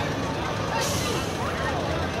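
Heavy truck's diesel engine running as it rolls past, with a brief hiss of air from its air brakes just under a second in. Voices around it.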